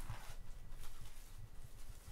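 Clear plastic shrink wrap crinkling as it is pulled off a soft-cover photo book, with a sharp crackle at the start and softer crackles after, over low handling rumble.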